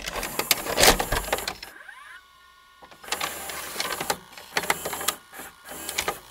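Mechanical whirring with rapid clicking. It drops away for about a second, two seconds in, where a short rising whine sounds, then starts up again.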